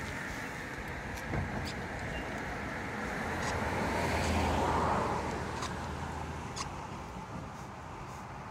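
A car passing on the street, its road noise swelling to a peak about halfway through and then fading. A few short, faint high squeaks from the pig come through over it.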